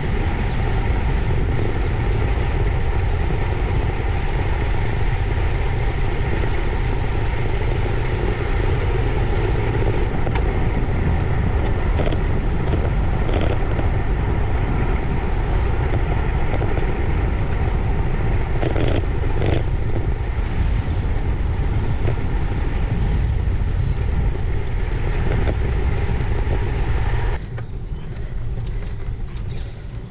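Wind buffeting the microphone and tyre noise of a bicycle rolling on a tarmac road, a steady rushing rumble. A few short clicks come about halfway through, and the noise drops abruptly a few seconds before the end.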